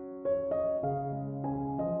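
Slow, soft meditation music played on piano, single sustained notes entering a few times with each left to ring.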